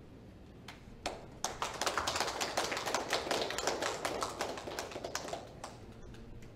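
A small group of people clapping by hand: a couple of lone claps, then a run of scattered applause from about a second and a half in that thins out near the end.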